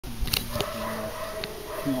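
German shepherd whining: one long, steady high whine, with a few short knocks near the start. A person's voice comes in near the end.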